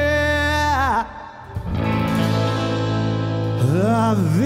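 A male singer holding a long note with vibrato that falls away about a second in, over guitar and bass accompaniment; after a brief instrumental stretch of held chords, the voice comes back near the end with a swooping phrase.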